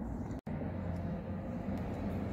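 Steady low rumble of outdoor background noise, broken by a split-second gap of silence about half a second in.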